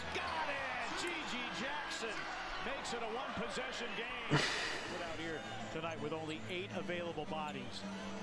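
Basketball broadcast audio playing quietly: sneakers squeaking on the court and the ball bouncing, with commentary underneath. A sharp hit sounds about four and a half seconds in.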